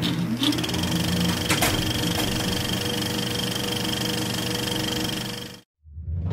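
Film projector sound effect: a steady whirr with a fast mechanical clatter, cut off abruptly near the end.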